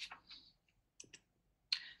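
Two quick, light clicks about a second in, a sixth of a second apart, as a presentation slide is advanced on a computer.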